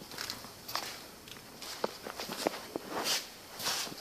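Footsteps on a concrete floor: scattered light clicks and shoe scuffs, with a couple of short scuffing swells near the end.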